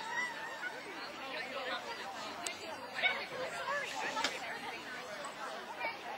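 Several people's voices chatting at a low level in the background, with a couple of faint clicks about two and a half and four seconds in.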